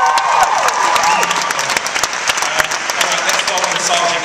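A large audience applauding, with high-pitched cheering shrieks fading out in about the first second.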